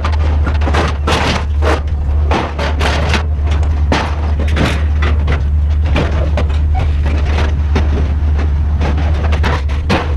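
Scrap metal clanking and banging again and again, at an uneven pace, as sheet and tubular steel pieces are stepped on and knocked against each other. A steady low rumble runs underneath.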